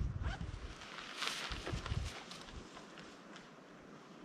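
Faint wind buffeting the microphone, with a few soft scuffs and rustles; the loudest, a brief hiss, comes about a second in.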